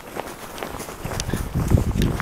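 Footsteps in deep snow, an irregular run of steps that grows heavier in the second half.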